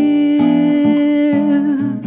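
A woman's voice holding one long sung note in a jazz ballad, over acoustic guitar accompaniment whose lower notes change beneath it every half second or so.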